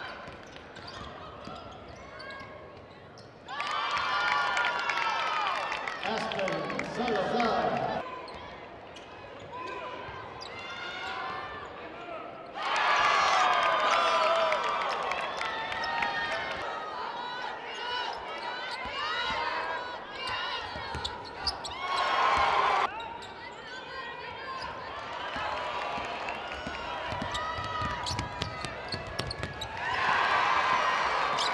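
Basketball game sound in a gymnasium: a ball bouncing on the court amid crowd voices and cheering. It comes in several short clips that cut in abruptly.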